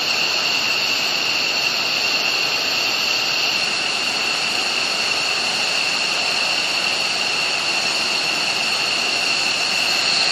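Twin jet engines of an F-15E Strike Eagle running steadily on the ground at taxi power: a loud, even rush with a steady high-pitched whine.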